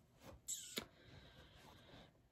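Quiet handling at the needle of a Singer Quantum Stylist 9960 sewing machine while trying to pull up the bobbin thread: a short scrape about half a second in, then a single sharp click.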